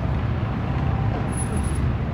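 Steady low rumble of city street traffic, with faint voices of passers-by.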